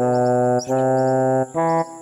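Music: a low, horn-like instrument plays three held notes in a slow melody, the third shorter and higher, then stops just before the end. Birds chirp faintly behind it over a steady high whine.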